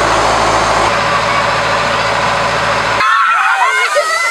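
Fire-engine pump running with a steady low drone under the loud hiss of a foam jet spraying from an air-foam nozzle. It cuts off abruptly about three seconds in, giving way to children's high-pitched voices.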